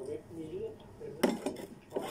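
Cutlery clinking against a stainless steel bowl: a short cluster of sharp clinks a little over a second in, and one more near the end.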